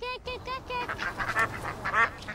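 Ducks quacking close up: a rapid run of short quacks at first, then several ducks quacking over one another from about a second in.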